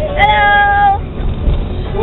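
A kitten gives one drawn-out meow, held at an even pitch for just under a second, over the low rumble of a moving vehicle.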